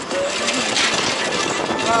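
A motor scooter being ridden, with its small engine running under steady wind noise on the microphone. A voice is heard briefly.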